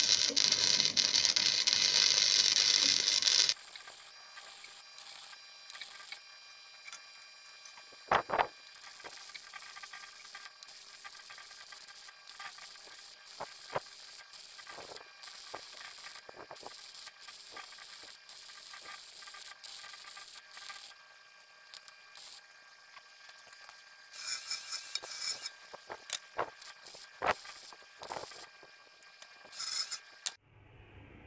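Arc welding on the cracked sump: a loud, steady crackling hiss that stops about three and a half seconds in. After that come scattered clicks and knocks, a sharper knock about eight seconds in, and short bursts of crackle near the end.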